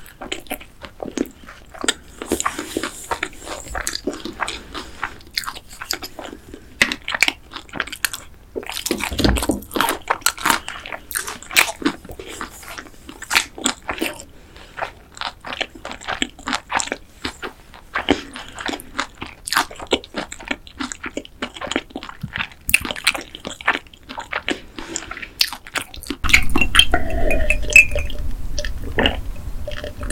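Close-miked chewing of a mouthful of sauced boneless fried chicken, with many sharp wet mouth clicks. Near the end, gulps of a drink swallowed from a glass.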